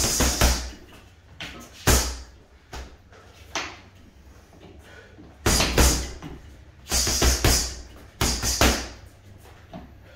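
Boxing gloves striking an Adidas Body Snatcher wrecking-ball bag, which is soft-filled with foam and fleece: about a dozen punches that land as thuds in quick combinations of two or three, with short pauses between.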